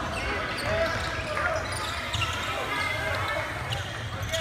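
A basketball dribbled on a hardwood gym floor during play, with voices of players and spectators in the echoing gym behind it.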